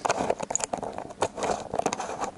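Handling noise on an action camera's microphone: irregular knocks, taps and rubbing as the camera is gripped and moved.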